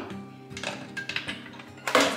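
Background music with a few light clicks. Just before the end comes a sharper click as the magnetic child-safety cupboard lock releases and the cupboard door pulls open.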